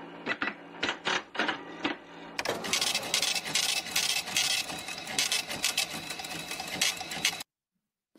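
Intro sound effect over animated title cards: a run of sharp clicks, several a second, for about two seconds, then a dense, fast mechanical clatter that cuts off suddenly shortly before the end.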